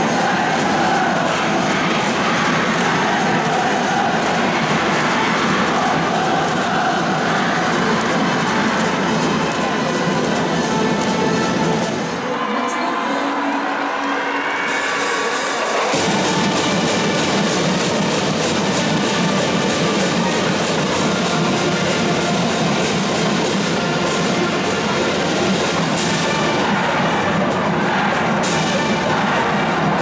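School brass band playing a stadium cheer song, with a massed student cheering section chanting and a crowd cheering. The bass drops out for a few seconds about halfway through, then the full band and crowd come back.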